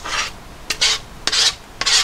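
A spatula scraping thick white sauce around the coated inside of a frying pan: about four short scraping strokes in quick succession.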